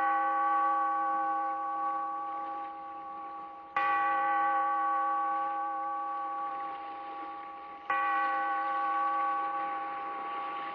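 A large bell tolling slowly, struck about every four seconds. Each stroke rings on with several overtones and fades gradually until the next.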